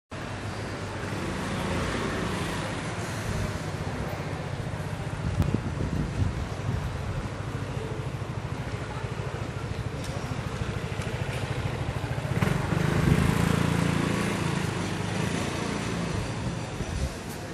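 City street ambience with a continuous low rumble of motor traffic, growing louder about twelve seconds in, with a few brief knocks.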